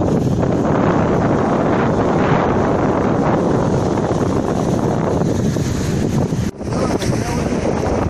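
Strong wind buffeting the phone's microphone over surf breaking and washing against a pier wall, with a brief drop in the sound about six and a half seconds in.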